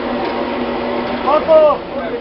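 Electric pan mixer of a concrete block-making plant running with a steady hum. A voice calls out briefly over it near the end.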